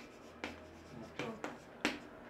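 Chalk writing on a chalkboard: four short, sharp taps and scrapes of the chalk against the board, the last near the end the loudest.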